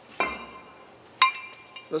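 Two sharp metal clinks about a second apart, each ringing briefly, as a brake rotor and a brake-lathe centering cone are handled.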